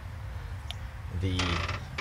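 A man's voice resuming after a short pause, over a steady low rumble.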